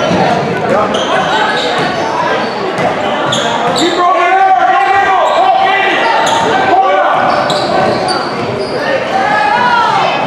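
Indoor basketball game: sneakers squeaking on the hardwood-style court, a ball bouncing, and the voices of players and onlookers, in a large echoing gym.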